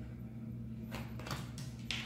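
A few faint taps and rustles of an oracle card being handled and set down, over a low steady hum.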